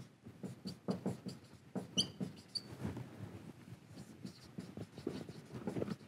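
Marker pen writing on a whiteboard: a run of short, irregular strokes and taps, with a couple of brief high squeaks from the marker tip about two and a half seconds in.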